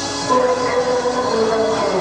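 Loud dance music from the party's sound system: long held synth notes sounding together, stepping down in pitch about halfway through, over a dense busy backing.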